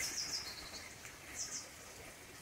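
A bird chirping in the trees: a quick cluster of high, short notes near the start and another about a second and a half in, over faint outdoor hiss.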